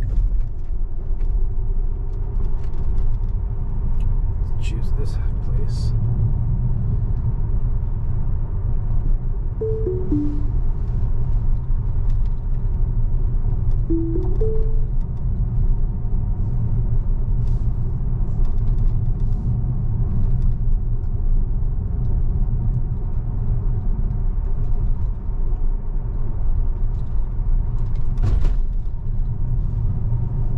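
Steady road and tyre rumble inside a Tesla's cabin as it drives along. About ten seconds in there is a short falling three-note electronic chime, and a few seconds later a short rising two-note chime.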